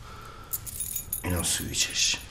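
A bunch of keys jangling as they are held up and dangled, starting about half a second in, with a short spoken phrase over the middle.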